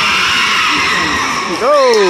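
Crowd chatter echoing in a gymnasium, with one loud shouting voice breaking in near the end.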